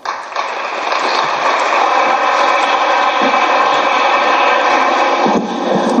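Audience applauding. It builds over the first second and stops shortly before the end.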